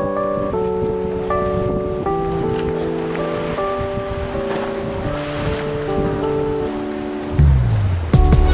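Background music: slow, held chords of sustained notes, with a soft hissing swell in the middle and a falling low glide near the end that leads into a louder passage.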